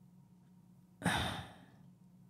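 A woman's single sigh into a close microphone: a breathy exhale about a second in that fades within half a second, with near silence before it.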